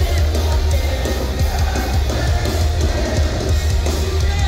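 Live pop-punk band playing loud and fast: pounding drum kit, distorted electric guitars and heavy bass at full volume.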